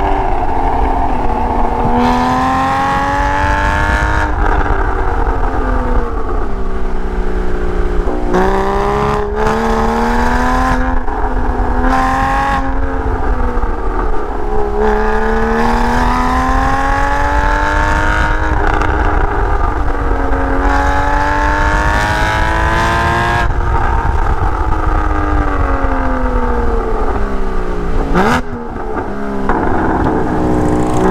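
Porsche 981's flat-six engine heard through a Soul Performance valved exhaust, its pitch rising and falling again and again as the car accelerates and backs off through a run of bends. There are several sudden drops in pitch, and near the end a brief dip in loudness with a sharp swoop in pitch.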